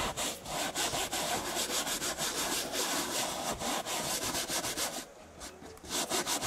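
Stiff bristle brush scrubbing a car seat's fabric insert wet with foaming upholstery cleaner, in quick back-and-forth strokes. The scrubbing stops briefly about five seconds in, then starts again.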